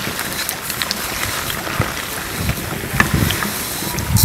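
Batter-coated raw banana fritters deep-frying in hot oil in an earthen pot, the oil sizzling steadily. A few sharp clicks and light knocks come from a wooden slotted spoon and a wire-mesh strainer as they scoop the fritters out.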